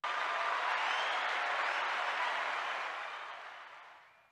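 Crowd applause, starting abruptly, holding steady, then fading out over the last second and a half.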